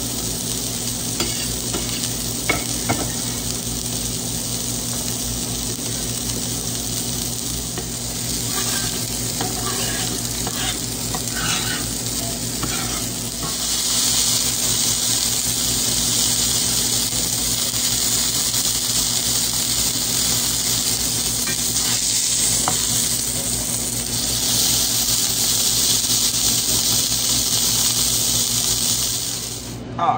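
A venison sausage patty frying in bacon grease in a cast-iron skillet, sizzling steadily, with a few light clicks and scrapes of a metal spatula. The sizzle grows louder about halfway through.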